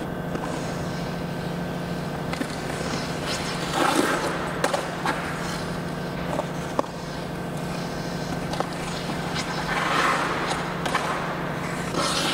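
Figure skate blades gliding and scraping on the ice, with louder edge scrapes about four seconds in and again near ten seconds, and a few sharp clicks, over a steady low hum.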